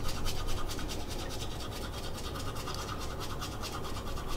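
Teeth being brushed with toothbrushes: fast, even scrubbing strokes close to the microphone.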